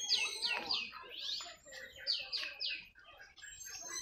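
Birds calling: a run of quick notes, each falling in pitch, over the first two to three seconds, with softer chirps alongside.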